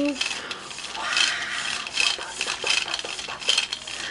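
Handling noise as a plastic mermaid doll is waved by hand: a rubbing swish about once a second, with light clicks in between.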